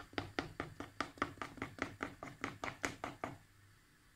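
A spoon stirring cocoa cake batter in a bowl, clicking against the side in a quick, even rhythm of about six strokes a second, then stopping about three seconds in.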